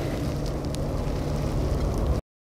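Steady outdoor background rumble and hiss with no distinct event.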